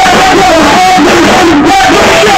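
Punk band playing live: distorted electric guitars, bass and drums with a voice shouting over them, very loud and overloaded on a phone microphone.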